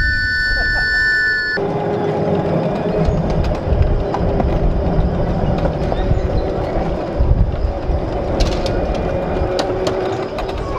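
Miniature ride-on Thomas locomotive running along its small-gauge track with a steady running hum and a few clicks of the wheels on the rails. A steady high tone at the start cuts off abruptly about one and a half seconds in.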